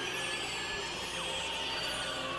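Dense experimental electronic noise music: a steady droning wash with a buzzing band high in the mix, and several high-pitched sweeps falling in pitch over it.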